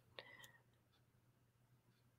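Near silence: room tone with a faint steady low hum and one soft click just after the start.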